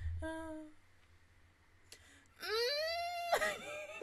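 A woman's short hummed "mm" near the start, then, about two and a half seconds in, a long high drawn-out vocal wail that rises and then falls in pitch.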